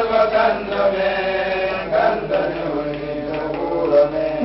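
Voices chanting an Islamic devotional song in long held, melodic lines that slide between notes.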